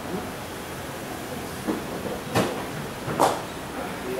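Steady outdoor background noise, with two short sharp sounds a little under a second apart in the second half, the second one louder.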